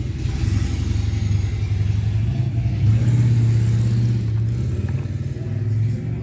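A steady low droning hum, swelling a little around the middle.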